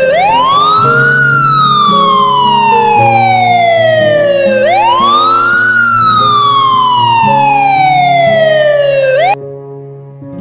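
Ambulance siren wailing: two cycles, each a quick rise in pitch followed by a long slow fall, cutting off suddenly near the end. Guitar music plays underneath.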